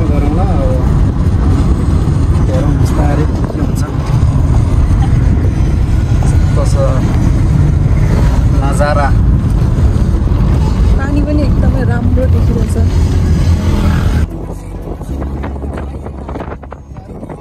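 Steady low road and tyre rumble inside the cabin of a Tata Tigor EV driving on a rough road, with voices talking over it now and then. The rumble drops sharply about fourteen seconds in.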